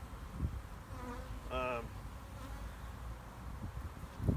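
Honeybees buzzing around an open hive, with a bee passing close by about a second and a half in. The colony is a defensive, aggressive ("hot") one.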